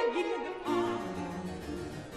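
Baroque string ensemble with harpsichord continuo playing a short instrumental passage between sung phrases. A sung note with vibrato dies away about half a second in, and steady violin and bass lines carry on.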